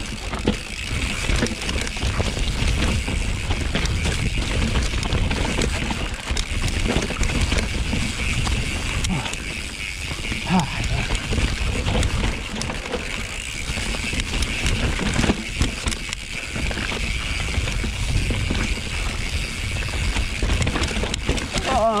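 Capra mountain bike descending a bone-dry dirt singletrack: a steady low rumble of wind buffeting the camera microphone, with tyre noise and scattered knocks and rattles from the bike over roots and stones.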